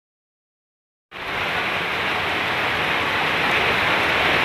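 Heavy rain pouring down steadily, starting suddenly about a second in.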